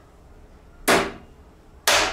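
Hammer striking the rusted sheet-steel case of an old battery charger twice, about a second apart, each blow ringing out briefly: tapping at a rusted corner screw that was just sprayed with penetrating oil, to help free it.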